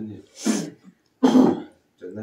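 A person coughing or clearing their throat twice, two short harsh bursts a little under a second apart.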